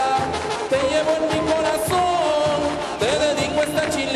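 Live brass band playing a chilena, horns carrying the melody over a steady dance beat.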